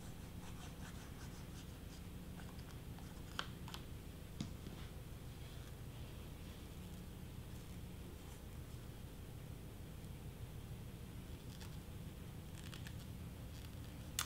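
Quiet steady low room hum, with a few faint clicks and rustles from hands pressing a paper wrapper around a lip balm tube.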